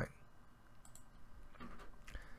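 A few faint clicks over quiet room tone.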